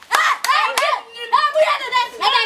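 Women shouting in a heated argument, with three sharp hand claps in the first second.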